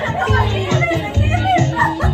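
Dance music playing with a steady bass beat, about two beats a second, with voices over it.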